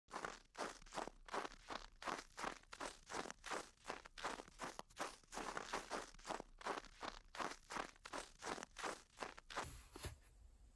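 Footsteps crunching through fresh snow at a steady walking pace, about two steps a second; they stop suddenly near the end.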